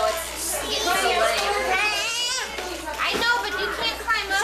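Small children's voices, babbling and squealing, mixed with adults talking, with a long high, wavering child's cry or squeal about two seconds in.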